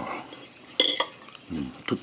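A metal fork clinking and scraping against a plate, with one sharp ringing clink just under a second in and a lighter click near the end.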